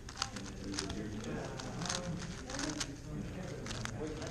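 GAN356X 3x3 speedcube being turned rapidly during a solve: a quick, irregular run of plastic clicks and rattles from the layers, over background chatter of people in the room.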